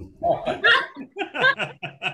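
People laughing in short bursts over a video call, mixed with a man's voice starting to speak again.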